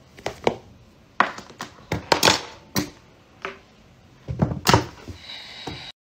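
Irregular sharp knocks and taps of objects handled and set down on a hard glass tabletop, about a dozen in all, bunched together near the end.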